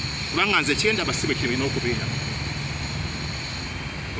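A man's voice for about the first second and a half, over a steady low engine drone that continues on its own for the rest.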